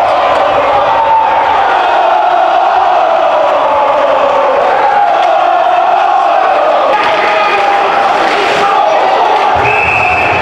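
Hockey crowd in an ice rink cheering and shouting, a loud, steady mass of many voices with no break.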